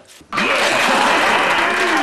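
Applause with cheering voices, breaking in abruptly about a third of a second in after a brief near-silent gap and then holding loud and steady.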